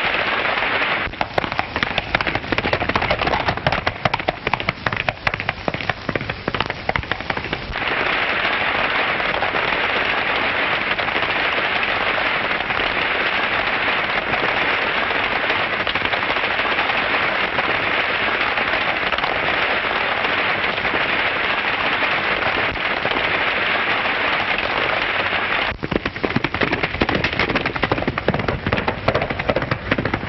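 Horses galloping with a runaway stagecoach. A fast clatter of hooves fills the first several seconds and returns near the end, and a steady rushing rumble of the coach runs in between.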